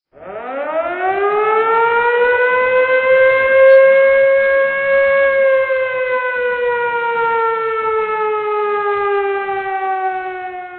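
A siren winds up quickly over the first two seconds into a loud, steady wail, then slowly sinks in pitch as it runs down, in the manner of an air-raid siren.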